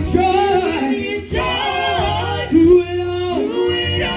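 A gospel vocal group singing through microphones, a woman's voice leading with long held notes.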